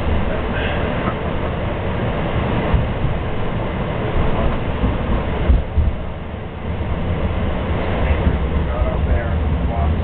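Inside a moving MAX light rail car: a steady rumble of the wheels on the rails and the running gear, with a couple of sharp knocks about five and a half seconds in, then a briefly quieter stretch.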